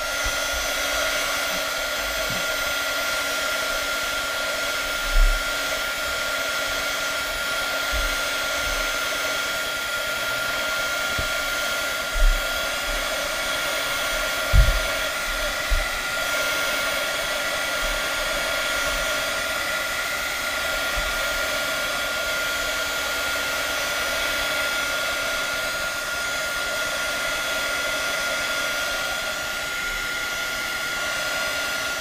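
Craft heat gun blowing steadily with a constant whine, drying wet molding paste on a card. A few brief low bumps come in the middle.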